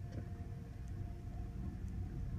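Hydraulic elevator car travelling upward: a steady low hum with a faint steady tone, unchanging through the ride.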